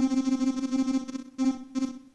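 Piano sound from the Groove Rider GR-16 iPad groovebox app, played by tapping a pad. One note is held for over a second, then the same note is struck twice more, briefly, near the end.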